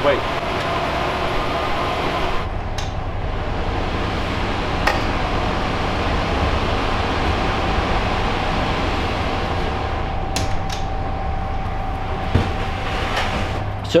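Steady rush of server-room cooling fans and air handling, with a low hum coming in a couple of seconds in. A few light knocks and clicks come from the server drawer being handled.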